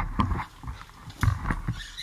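Thick gunge squelching and sloshing around legs and sneakers moving in a tub, heard as irregular clusters of low thumps and wet clicks. They are busiest at the start and again a little past the middle.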